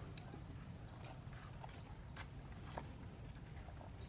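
Quiet outdoor ambience: a steady low rumble under a faint, steady high-pitched tone, with scattered small clicks and ticks.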